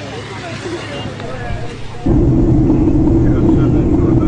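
Voices in the first half. About two seconds in, a sudden loud, steady low rumble begins and carries on.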